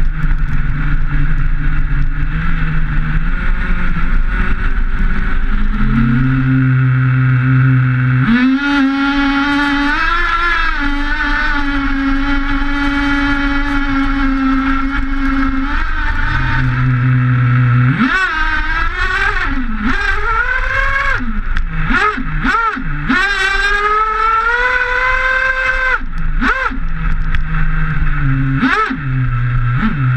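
Traxxas T-Maxx 3.3 nitro RC truck's small two-stroke glow engine, heard close up from a camera on the truck. It idles, then revs high and holds for several seconds and drops back to idle. It then gives a run of quick throttle blips, revs again, and blips once more near the end.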